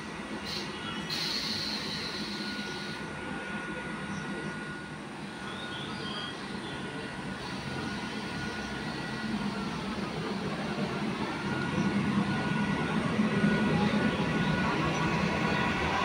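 ICF Medha electric multiple unit train approaching slowly along the platform track, its running rumble growing steadily louder as it draws alongside. A steady high-pitched tone runs through the sound.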